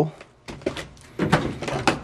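A hand scraping and picking at crumbling rust and dirt on a 1951 Mercury's rusted floor pan beside the rocker, a scatter of short scratchy clicks and crackles.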